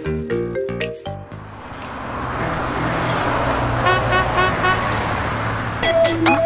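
A quick run of musical notes, then a vehicle sound effect: engine and road noise swelling up over a steady low hum, with a brief run of rapid pitched blips partway through.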